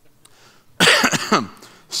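A man coughs once, loudly, about a second in.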